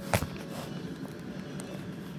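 A single sharp knock just after the start, then a faint steady low hum with hiss.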